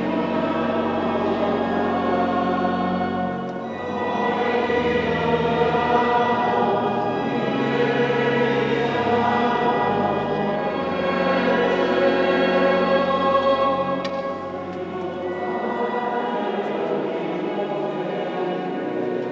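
Choir singing a slow hymn in long held chords, over low sustained bass notes.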